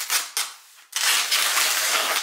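Plastic food packaging being handled and pulled open: two short rustles, then a second or so of continuous loud crackling tear-and-rub noise from about a second in.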